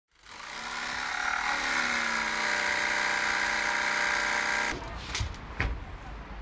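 Plunge-cut track saw running along a guide rail through a sheet board: the motor spins up with a rising whine, holds steady through the cut, then stops abruptly, followed by two sharp knocks.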